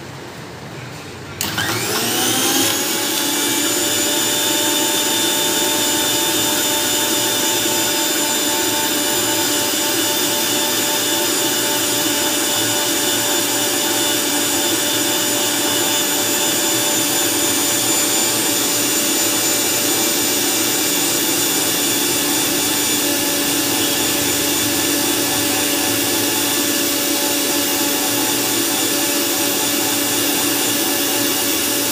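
A Sujata mixer-grinder's motor switches on about a second and a half in, spinning up with a quickly rising whine, then runs steadily and loudly as it blends a shake in the jar.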